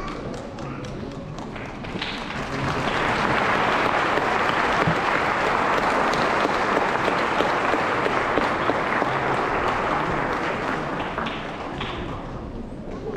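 A congregation applauding, a dense clapping that swells about two seconds in and tapers off near the end, with voices underneath.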